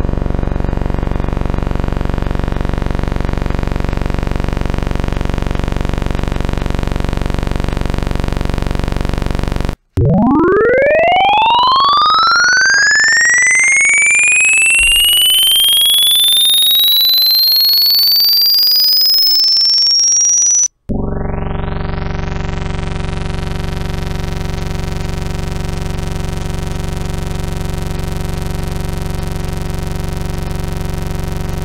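Computer-generated sawtooth-variant wavetables, built from Fibonacci-weighted sums of harmonics, played back one after another: first a steady buzzy tone rich in overtones, then after a short break a single tone sweeping upward in pitch from very low to very high over about eleven seconds, then after another break a second steady buzzy tone with a different timbre.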